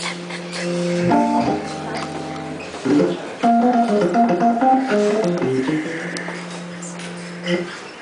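Hammond organ playing held chords for about the first three seconds, then a quick line of single notes.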